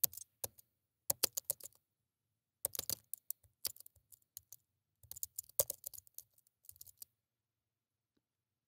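Typing on a computer keyboard: quick runs of keystroke clicks in four or five short bursts with brief pauses between them, stopping about a second before the end.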